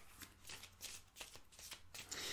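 Faint hand shuffling of a tarot-size oracle card deck: a string of soft, irregular card flicks and rustles.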